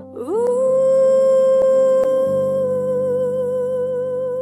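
A female ballad singer slides up into one long held high note, sustained over soft keyboard chords, with a vibrato that widens in the second half.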